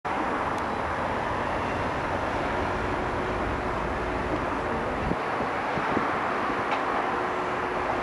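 Steady hum of distant city traffic heard from high above. A low rumble underneath cuts off about five seconds in.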